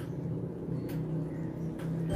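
Steady low hum in a kitchen, with two faint clinks of a metal ladle as cooked sambal is scooped out of a wok.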